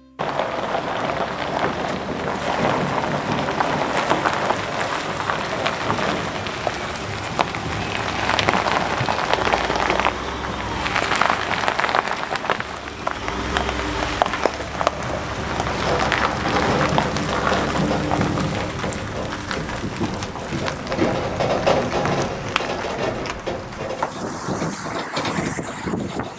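Tires crunching and popping over gravel as a pickup truck and tandem-axle dump trailer roll along a gravel driveway, with a low vehicle rumble underneath. The sound changes near the end.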